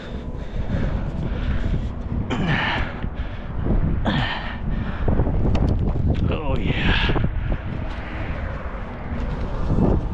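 Wind buffeting the microphone. Over it come a man's heavy voiced breaths of exertion, three times, while he climbs over the edge onto a gravel roof.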